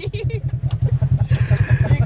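Engine of a side-by-side off-road vehicle running with a steady, rapid low throb, with a brief hiss near the end.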